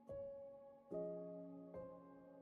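Soft, slow instrumental background music: keyboard notes and chords struck about once a second, each left ringing.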